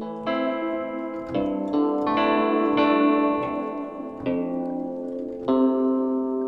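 A plucked, guitar-like Omnisphere synth patch playing a slow melody being worked out: about seven notes and chords, each struck sharply and left ringing into the next.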